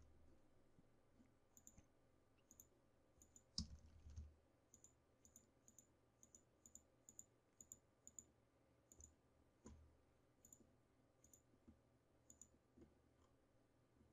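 Faint computer mouse clicks, a dozen or more at irregular intervals, with a couple of slightly louder knocks about three and a half seconds in and near ten seconds.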